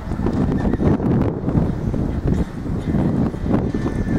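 Horse's hooves striking a dirt arena at a gallop, an uneven run of dull thuds as the mare turns through a pole-bending pattern.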